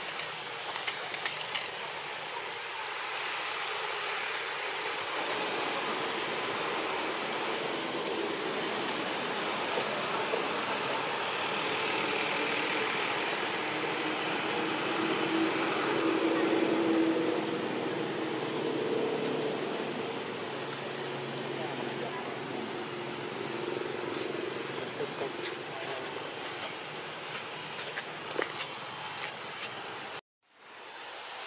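Steady outdoor background noise with indistinct voices. The noise swells for several seconds around the middle and then settles, with a few sharp clicks near the start and the end.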